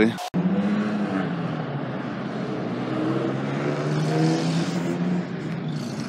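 Car engine running close by over general traffic noise, its low note rising a little and growing louder toward the middle before easing off.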